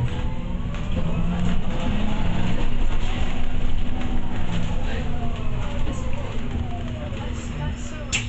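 Bus engine and drivetrain heard from inside the passenger saloon, running over a steady low rumble and hum. A whine rises in pitch over the first few seconds as the bus gathers speed, then falls away as it slows.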